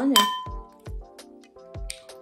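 A metal spoon clinks once against a ceramic bowl with a short ring. Then background music with a steady beat comes in.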